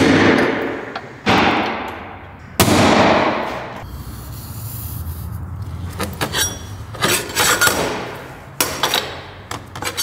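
A hammer striking a hole punch against a steel mounting plate held up under a car: three sharp blows a little over a second apart, each ringing on in the metal, marking where holes will be drilled. Then lighter clicks and scrapes as a steel plate is handled and marked on a metal workbench.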